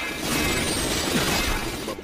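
Anime action sound effect for a spinning disc-shaped magic projectile flying: a dense, noisy rushing and crashing sound that cuts in suddenly after a brief silence.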